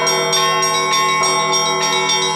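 Russian Orthodox bell ringing: several bronze bells of a small belfry struck by their clappers on ropes, their tones overlapping and ringing on, with fresh strikes about a second in.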